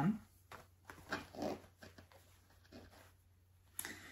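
Soft rustling of a large piece of cross-stitch fabric being unfolded and handled, in a few short, quiet bursts.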